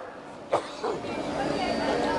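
A pause in a man's amplified sermon. Only the low background of the venue is heard, with a couple of faint, short vocal sounds early in the pause.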